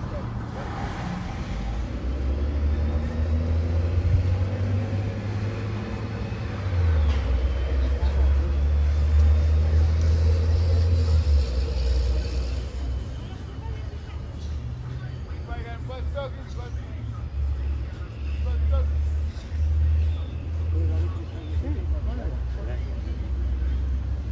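Street traffic passing a park: a low rumble of cars and a bus that swells and fades, loudest for several seconds in the middle, with faint voices now and then.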